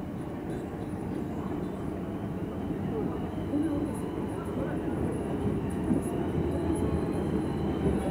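Alstom Metropolis subway train approaching through the tunnel into the station: a steady rumble of wheels on rails that grows louder as it nears. A thin high whine joins about five seconds in.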